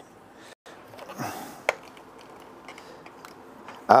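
A cloth rag being handled with a soft rustle, then a single sharp knock a little before halfway, over faint workshop room tone.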